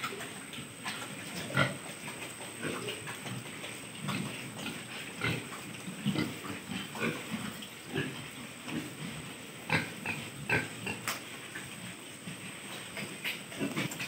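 A group of pigs grunting, short irregular grunts one after another from several animals, with a few louder ones about one and a half seconds in and again near ten seconds in.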